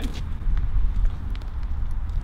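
Wind rumbling on the microphone outdoors, with a few faint clicks over it.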